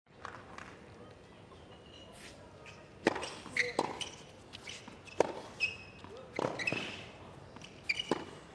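Tennis ball bounced a couple of times on a hard court before the serve, then from about three seconds in a rally: sharp racket strikes and ball bounces, each a crisp single hit with a short echo.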